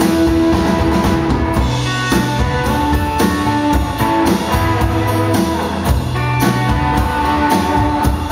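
Live rock band playing a song: drum kit keeping a steady beat under strummed acoustic guitar and electric guitars.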